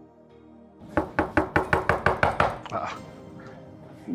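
Soft background music, cut off about a second in by fast, hard knocking on a wooden door: about a dozen rapid knocks, easing off near three seconds in.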